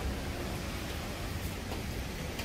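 Steady outdoor background noise: an even hiss over a low rumble, with no distinct event standing out.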